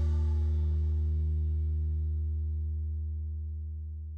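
The final chord of a rock song ringing out on amplified electric guitars and bass guitar, a low sustained note slowly fading away.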